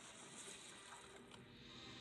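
Near silence: faint game-cutscene sound from the monitor's speakers, with a couple of faint ticks a little over a second in.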